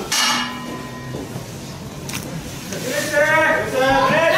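Wrestling ring bell struck once, its tone ringing on for about a second, the signal that the match is under way. A voice shouts near the end.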